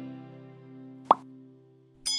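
Sustained notes of intro music, guitar-like, dying away, with one short pop sound effect about a second in, a button click in an animation. It then falls silent.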